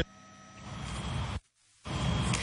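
Faint background noise with a thin steady tone, growing a little louder, then cut off by a brief silent gap about one and a half seconds in: an edit between two news clips.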